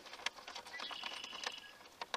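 Light clicks and taps of battery cables and their metal ring terminals being handled at the battery posts while the positive cable is reconnected. A faint, thin, steady high tone sounds for about a second in the middle.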